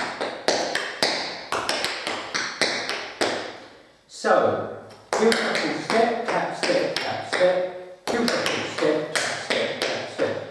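Metal taps on tap shoes striking a tiled floor in a rhythmic tap-dance sequence: a steady run of sharp clicks from steps and taps, stepping behind and out to the side.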